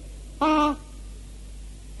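A man's voice saying one short syllable at an even pitch that drops at its end, over a steady low hum.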